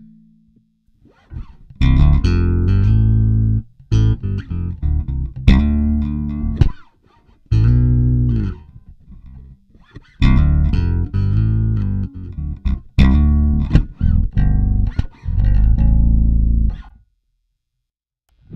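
Electric bass guitar played through an effects pedalboard, repeating the same short riff over and over in phrases separated by brief pauses.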